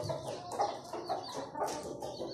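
A brood of Aseel chicks peeping repeatedly, many short high falling peeps, with a hen clucking low among them.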